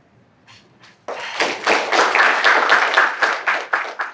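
Audience applauding after a talk. A couple of scattered claps come first, then full applause breaks out about a second in.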